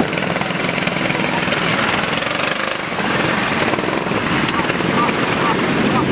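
Steady, loud engine noise with rapid pulsing, with voices mixed in.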